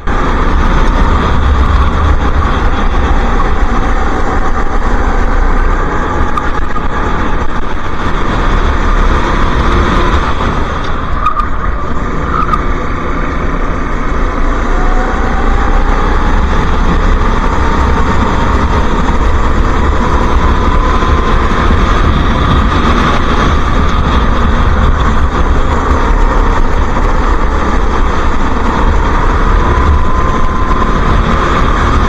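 Onboard sound of a racing kart at speed, its engine running hard over heavy wind rumble on the microphone. The engine's pitch wanders through the corners and rises steadily over the second half as it accelerates.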